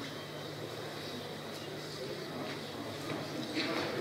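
Indistinct murmur of voices in a large hall over a steady low electrical hum, with no clear speech.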